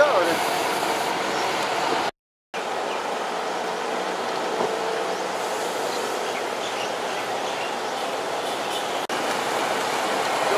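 Engines of large military cargo trucks running as a convoy drives past, a steady even noise, broken by a brief gap of silence about two seconds in.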